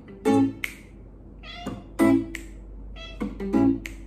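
A domestic cat meowing several times between short chords strummed on an archtop guitar, the cat's calls falling in the gaps between the chords.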